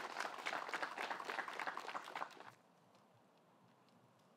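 Faint applause from a gallery of spectators, dense irregular clapping that cuts off about two and a half seconds in.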